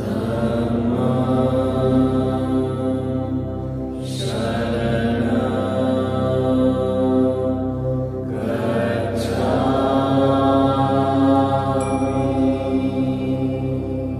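Chanted mantra set to music: long held vocal notes over a steady drone, with a new phrase starting about every four seconds.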